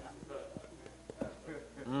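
A short lull in a church service, with faint murmured responses from the congregation, then a voice saying "mm-hmm" near the end.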